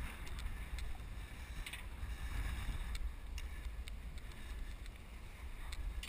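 Wind buffeting the microphone as a low, steady rumble, with scattered light clicks and knocks from climbing up the sailboat mast's metal steps.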